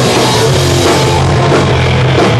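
Live rock band playing loud, with electric guitars and a drum kit in a dense, unbroken wall of sound.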